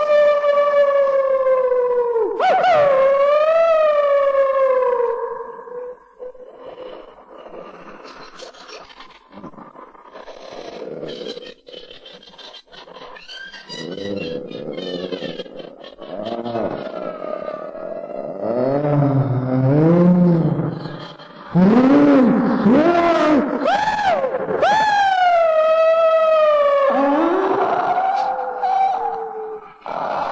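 Long wolf-like howls that slide up and down in pitch, led by one falling howl at the start. After a quieter stretch, a low wavering moan comes about two-thirds of the way through, then several howls overlap near the end.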